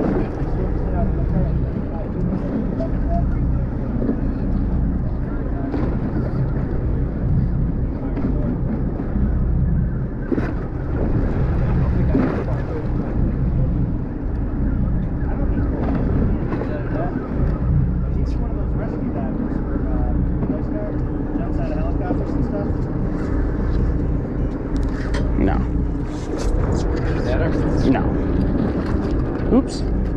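A boat's engine running steadily, with muffled voices in the background.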